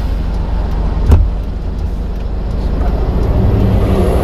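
Manual Hyundai light truck's engine idling, heard from inside the cab, with a single sharp knock about a second in. A deeper rumble builds near the end.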